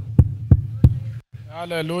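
A run of evenly spaced low thumps, about three a second, that stops abruptly about a second in; a man's voice follows near the end.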